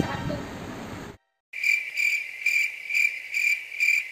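Cricket-chirping sound effect edited in after a sudden cut to silence: a steady high chirp pulsing about three times a second, the comic 'awkward silence' crickets.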